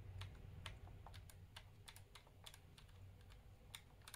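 Faint, irregular clicking of the push-button keys on a 1978 Kosmos Bio-Clock desktop biorhythm calculator, about four clicks a second, as the World Time key is worked to get the function to respond. A low steady hum sits underneath.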